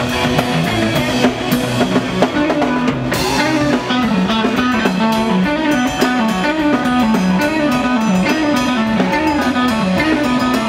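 Live rock band playing an instrumental passage: electric guitars, bass and drum kit. A low repeating riff rising and falling about once a second comes in a few seconds in, under steady drumming.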